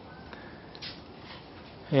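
Quiet room tone in a small garage with a faint brief sound a little under a second in; a man's voice begins right at the end.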